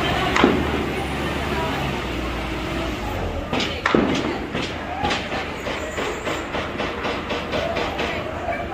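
Distant gunfire from the hillside: a single loud shot about half a second in and another near the middle, then a rapid string of shots, several a second, through the second half. A steady low rumble runs underneath.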